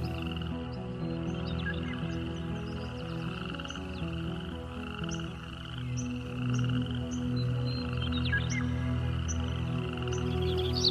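A steady, pulsing night-time chorus of calling animals, with short high chirps scattered over it. Soft sustained music chords play underneath.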